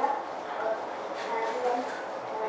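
Indistinct high-pitched voices chattering over room babble, with no clear words.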